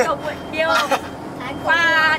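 Short bursts of speech inside a bus cabin, over the bus's steady low engine drone.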